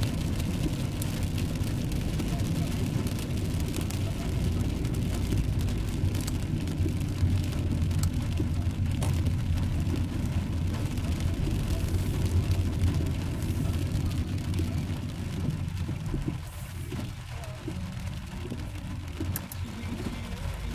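Car cabin noise while driving on a wet road in rain: a steady low rumble of engine and tyres, with faint light ticks of rain. The rumble drops in level about three quarters of the way through as the car slows in traffic.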